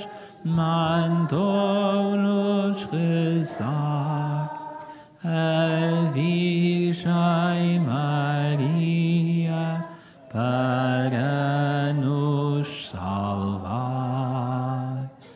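A man's voice singing a Marian hymn unaccompanied, in slow phrases of long held notes with short pauses for breath.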